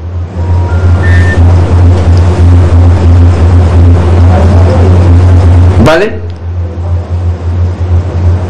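Loud, steady low hum and hiss of a poor telephone line fed into the broadcast. The caller's voice cuts in and out and cannot be made out through it. A few short, faint beeps sound about a second in.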